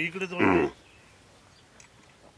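A Khillar calf bawling once, a short call that turns hoarse at its end and is over within the first second. It is a distress call from a calf held down while its nose is being pierced.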